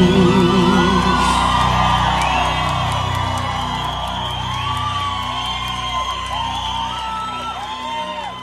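Closing moments of a live sertanejo song: a held, wavering final note ends about a second in, and the band's last sound fades slowly under an audience whooping and cheering.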